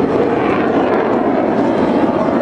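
Blue Angels F/A-18 Hornet jet flying overhead, its engines making a loud, steady roar that holds even throughout.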